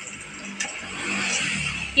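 A motor vehicle's engine rumbling, growing louder through the second half.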